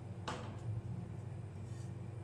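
A metal spatula scrapes once across the frozen steel plate of a rolled-ice-cream pan, a short scrape about a quarter second in, over a steady low hum.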